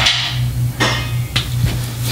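A few sharp knocks and thumps, about three in the second half, over a steady low hum.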